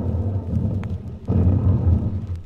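Radio-drama sound effect of distant dynamite blasts: a low rumble that dips and swells again just over a second in.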